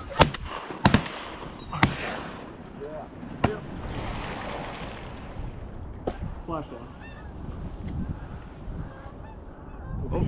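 Shotgun firing at flying geese: three shots in quick succession in the first two seconds and another at about three and a half seconds, with geese honking between them.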